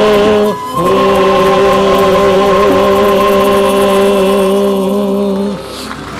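Male choir with guitars holding the long final chord of a bolero. The chord breaks briefly about half a second in, is taken up again and held steady, then stops near the end.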